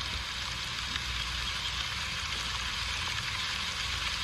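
Steady hiss like rain or static, even throughout, with a low hum underneath. No music or voices.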